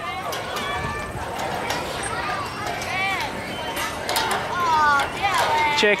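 Outdoor background of children's and other people's voices, with a few high-pitched calls and shouts standing out over the chatter.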